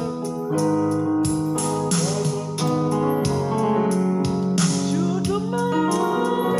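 Electronic keyboard playing gospel-style chords in B major over a drum rhythm, the chords changing about once a second.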